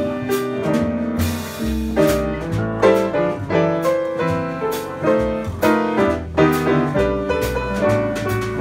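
A jazz quartet playing live: piano, archtop electric guitar, upright bass and drum kit, with a shifting line of pitched notes over low bass notes and cymbal strokes.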